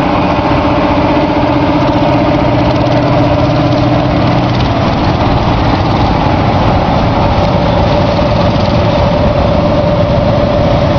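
The diesel engine of the Big Bud 747 articulated tractor running steadily as the tractor drives slowly past, a continuous engine drone whose note shifts slightly about halfway through.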